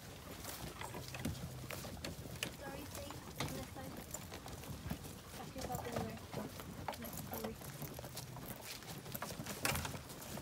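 People walking in rubber boots through grass, with irregular light knocks and rattles from a wheelbarrow being pushed and a plastic trough being carried.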